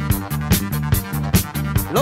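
Instrumental passage of a late-1970s Italian pop record: a steady, danceable drum beat over a repeating bass line, with a rising slide near the end.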